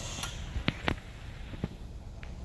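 Three light clicks as a hand works the controls of a benchtop Pensky-Martens flash point tester, turning the unit down after the test: two close together about two-thirds of a second in, one more near the end.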